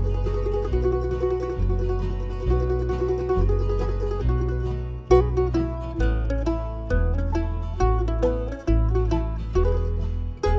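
Instrumental break of a folk ballad: plucked acoustic strings over a bass line that changes note about once a second. A note is held through the first half, and quick plucked melody notes take over after about five seconds.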